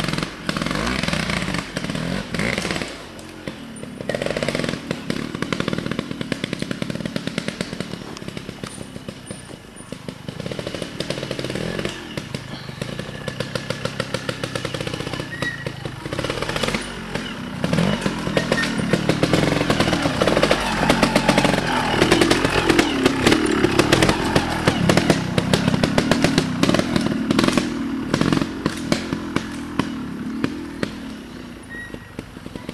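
Scorpa trial motorcycle engine revving in short bursts and blips as it picks its way over boulders, then held at higher revs and louder through the second half.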